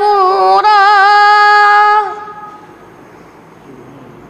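A boy's voice chanting Quran recitation (tilawat), sliding through an ornamented phrase into a long held note. The note ends about halfway through, and the sound dies away into a faint room echo.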